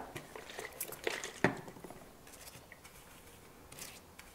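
A few faint, light taps and clicks from handling a paintbrush and makeup palette, the loudest about a second and a half in, over quiet room tone.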